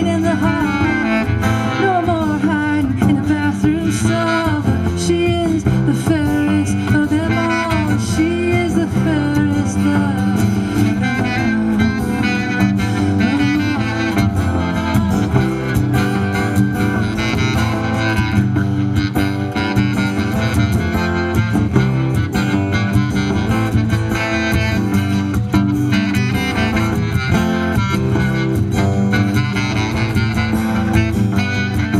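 Live acoustic band playing an instrumental passage: strummed acoustic guitar and a plucked upright bass line under a wavering lead melody.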